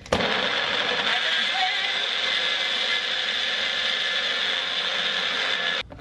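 Magic Bullet personal blender running at full speed, blending banana, protein powder and almond milk into a smoothie; the motor starts abruptly and stops suddenly shortly before the end.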